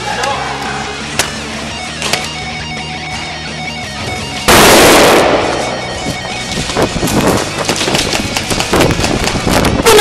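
Airsoft guns firing: a loud, harsh burst of noise about four and a half seconds in, then a run of quick sharp snaps through the last few seconds. Guitar-driven background music plays throughout.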